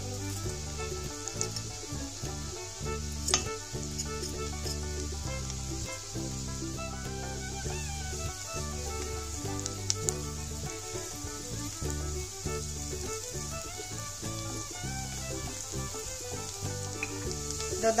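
Chopped onion and garlic sizzling in melted butter in an enamel pot, stirred with a wooden spatula, with a couple of sharp clicks about three and ten seconds in. Background music with held bass notes plays throughout.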